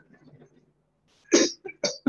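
A person's single short cough about a second and a half in, followed by a couple of brief throat sounds.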